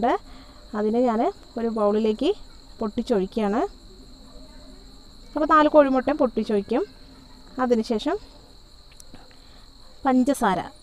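Cricket chirping in a steady high trill, heard throughout under a voice speaking in short phrases.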